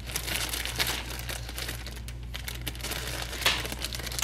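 Plastic wrapping of a pack of disposable diapers crinkling as it is handled, with louder rustles about a second in and again near the end.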